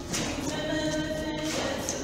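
Church choir singing in harmony, holding long notes, with a change of chord about one and a half seconds in.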